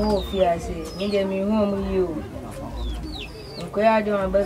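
A person talking, with several short, high, falling bird calls behind the voice.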